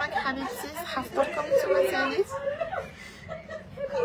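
Indistinct speech, loudest in the first two seconds and quieter after that.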